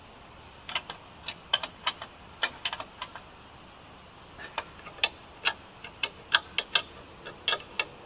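Irregular sharp clicks and light knocks of hand-tool work on a wooden pole frame, in short clusters a few tenths of a second apart, with a pause around the middle and a busier run in the second half.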